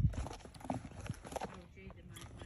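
Faint scattered knocks and rustling as children's sneakers and cleats are shifted about in a cardboard box.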